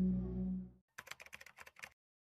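A steady low electronic drone fades out within the first second. It is followed by a quick run of about ten keyboard-typing clicks lasting under a second, a typing sound effect.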